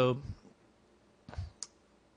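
A computer mouse button clicking once, sharply, about a second and a half in.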